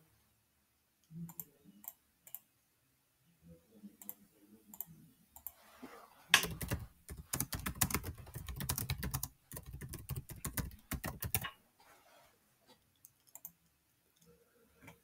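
Computer keyboard typing: a quick, dense run of keystrokes starting about six seconds in and lasting about five seconds, followed by a few separate clicks near the end.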